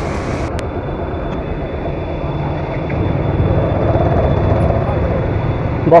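A motorcycle engine idling with a steady low rumble that swells a little about halfway through. A faint, thin, steady high tone sits above it.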